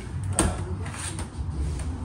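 A single sharp clack about half a second in, as a metal part is handled and picked up at a steel workbench, over a steady low room rumble.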